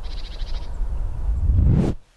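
A steady low rumble with a brief high chirping trill in the first half second, then a rising rush of noise that swells and cuts off abruptly.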